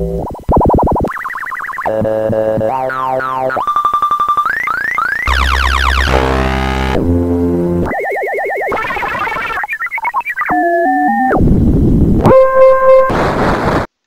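Soundgin sound synthesizer chip playing a rapid string of about fifteen different retro electronic sound effects, each under a second long: buzzes, warbling tones, rising and falling sweeps, pulsing tones and short noise rushes. Each is a complex sound made by amplitude and frequency modulation of one voice by two others. The sequence cuts off abruptly just before the end.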